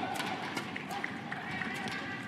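Badminton doubles rally: rackets striking the shuttlecock with sharp cracks and court shoes squeaking briefly on the court mat as the players move, over a background of voices.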